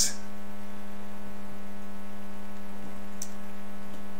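Steady electrical mains hum with a buzzy stack of overtones, unchanging throughout.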